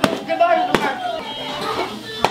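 A piñata being struck, two sharp smacks about three-quarters of a second apart, among children's and adults' voices.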